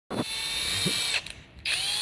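Cordless drill motor running with a steady whine, cutting out for about half a second past one second in, then spinning up again.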